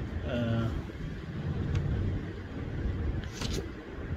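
A low, steady rumble of background noise, with faint clicks about two seconds in and again near the end.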